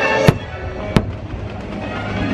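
Two sharp firework bangs, the first about a third of a second in and the second about a second in, over loud show music played through outdoor speakers.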